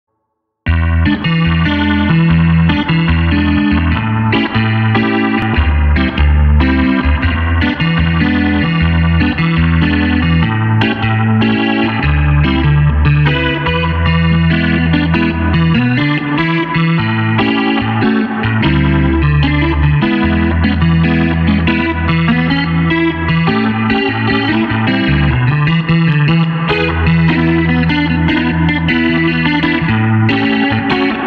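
Clavinet playing a funk jam: choppy chords over held low bass notes, starting about half a second in.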